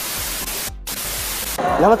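A burst of white-noise static used as an editing transition effect, with a brief break a little under a second in; it cuts off about a second and a half in.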